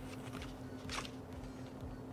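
Faint rustle of a small paper instruction booklet's pages being leafed through, with one brief, slightly louder page flick about a second in, over a low steady hum.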